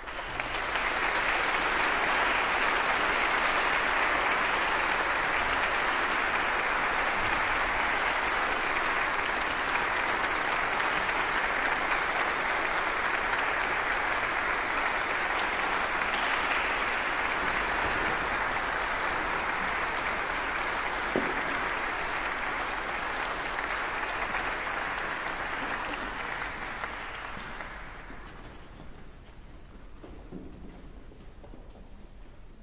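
Audience applause in a large hall. It starts abruptly, holds steady for over twenty seconds, then dies away near the end.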